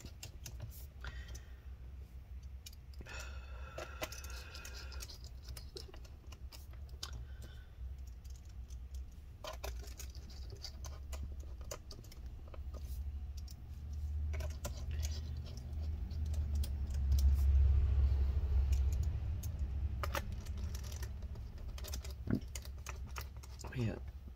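Precision screwdriver driving small screws back into a laptop's aluminium bottom cover: scattered light clicks and ticks of the bit, screws and hands on the metal case. A low rumble of handling swells past the middle and is the loudest part.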